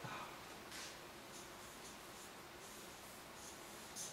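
Felt-tip marker writing on paper on a wall: several short, faint, scratchy strokes.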